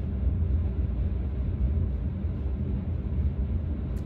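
A steady low rumble of background noise, with no distinct events.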